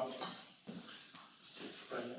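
Chalk writing on a blackboard: short, uneven scraping strokes as a formula is finished, after a brief spoken word at the start.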